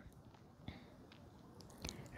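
Near silence: faint room tone with two small clicks, one less than a second in and one just before the end.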